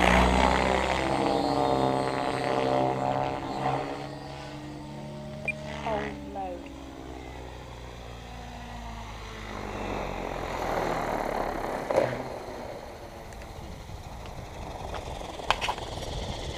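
Thunder Tiger Raptor E700 700-size electric RC helicopter in flight: its rotor and motor make a steady drone of several tones that drops slightly in pitch and fades over the first half as it flies off, then swells again around ten to twelve seconds as it comes back in. A sharp click about twelve seconds in.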